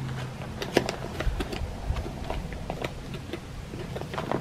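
A plastic spoon scraping and clicking inside a foil-lined freeze-dried meal pouch as food is scooped out, with light crinkling of the pouch: a scattered run of small, quiet clicks.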